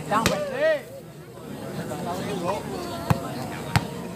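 A volleyball being struck during a rally: one sharp hit about a quarter of a second in, then two more sharp hits close together near the end, well under a second apart.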